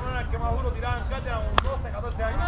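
A slowpitch softball bat hitting the ball once, a single sharp crack about one and a half seconds in, over players' voices calling out.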